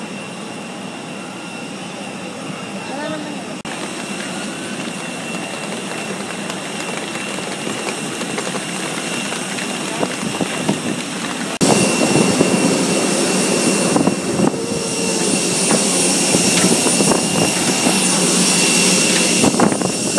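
Jet airliner running on the apron: a steady rushing noise with a high, fixed whine, which jumps abruptly louder and fuller about halfway through. A crowd of people's voices murmurs underneath.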